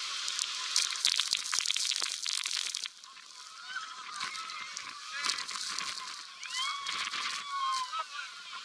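Heavy waterfall spray pelting the microphone, a loud hiss with dense crackling hits for the first three seconds. Then, amid the rush of water, boat passengers shriek and yell in a run of rising and falling cries as they are drenched.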